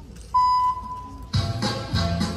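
A single electronic beep, one steady tone about a second long, loud at first and then fading, followed a little past halfway by the music for a rhythmic gymnastics hoop routine starting up.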